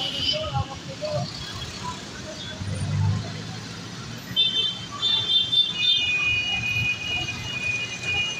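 Street traffic at a busy intersection. From about halfway, several long, steady, high horn-like tones overlap and sound loudly, with scattered voices in the background.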